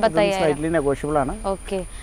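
Speech: a person talking in conversation, with short pauses between phrases.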